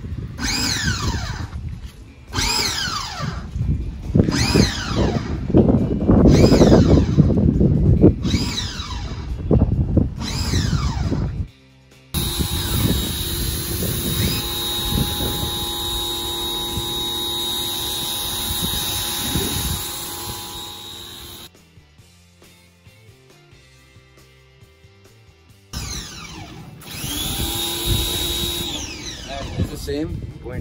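Electric pressure washer motor whining, repeatedly falling in pitch about once a second. From about 12 s it runs steadily for about ten seconds, goes quiet for a few seconds, then the falling whines start again near the end.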